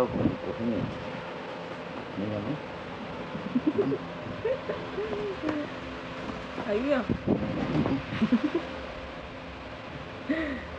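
A hen making a series of short, low clucking calls, bunched in a few runs, with a few sharp taps among them.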